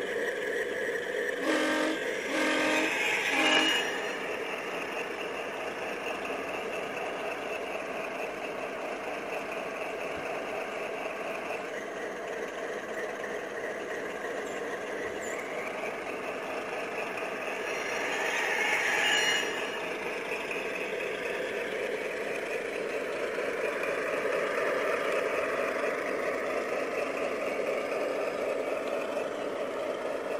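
LGB Alco diesel model locomotive running steadily as it pushes through wet snow on the track, its running sound holding a steady pitch throughout. Three short blasts come about two to four seconds in, and the sound swells briefly about nineteen seconds in.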